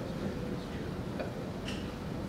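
Quiet room tone with a faint steady hum and a few light ticks: handling noise from a handheld microphone being passed from one person to another.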